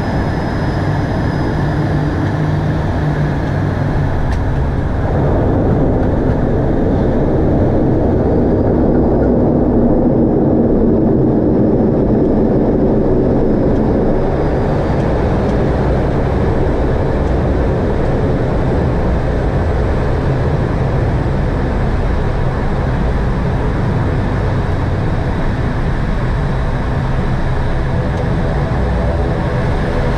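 Aircraft engines and cockpit noise during a roll along a runway: a steady, loud rumble that swells in the middle from about five to fourteen seconds in.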